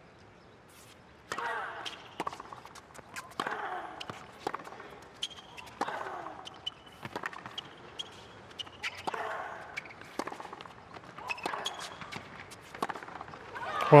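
Tennis rally on a hard court: racquets strike the ball every couple of seconds, with shorter ball bounces in between, and the players give short grunts on their shots.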